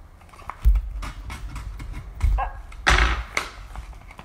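Priority Mail envelope being handled and torn open: a couple of dull knocks, then a short ripping sound about three seconds in.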